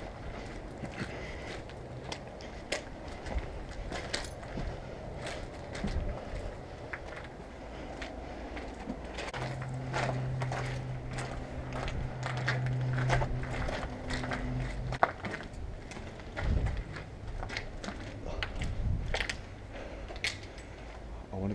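Footsteps crunching and scuffing on a grit- and debris-covered concrete walkway, with a low rumble underneath. A steady low hum comes in for about five seconds midway through.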